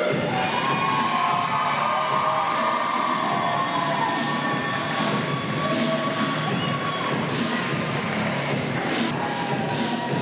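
Arena crowd cheering and shouting over music played through the venue's sound system.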